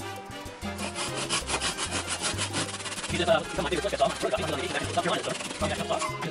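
Thin hand saw held flat on a wooden leg top, cutting back and forth to trim a protruding wooden dowel peg flush, in a run of quick strokes.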